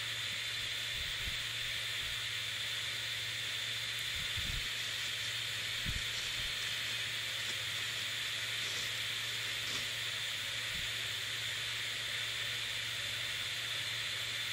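Steady background hiss with a low hum under it, and a few faint soft bumps from handling.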